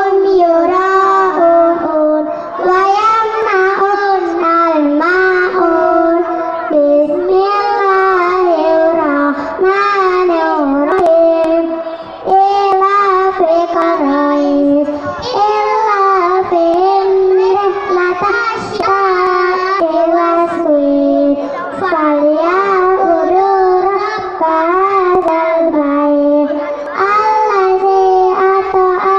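A group of children singing a song together in one melodic line into handheld microphones, with only brief breaths between phrases.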